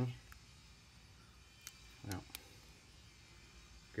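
A few faint, sharp clicks from a Llama XV .22 pistol being handled, with a short murmur of voice about two seconds in.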